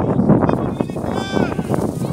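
Children's high-pitched shouts and calls from the players on the pitch, a few short cries that rise and fall in pitch, over a steady outdoor rumble.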